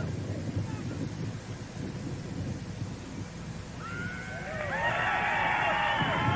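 Low wind rumble, then from about four seconds in a cluster of wavering high squeals as Space Shuttle Discovery's main-gear tyres touch down on the runway.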